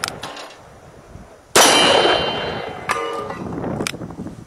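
A .44 Special round fired from a Taurus .44 Magnum revolver about a second and a half in, its report trailing off slowly. A steel target then clangs and rings with a metallic tone, and another sharp crack follows near the end.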